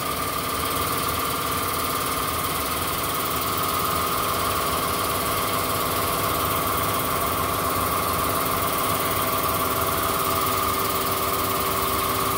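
An engine idling steadily, a constant hum with a steady whine over it that does not change.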